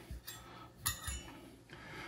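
Quiet room tone with a light clink a little under a second in and a fainter one just after, as metal measuring cups are handled on the counter.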